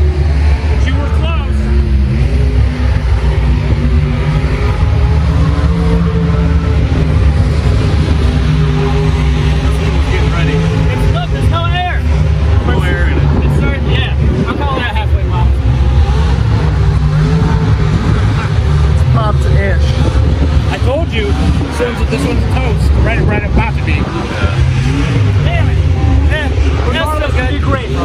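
Loud car engine running at high revs, its pitch holding steady for a few seconds and then stepping up or down, with people's voices faintly over it.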